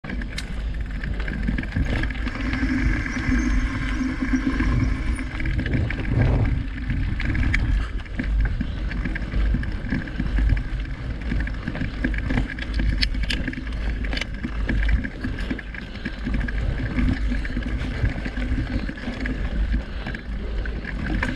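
Mountain bike riding along a dirt singletrack: a steady low rumble of wind on the microphone and tyres rolling on dirt, with scattered clicks and rattles from the bike over bumps.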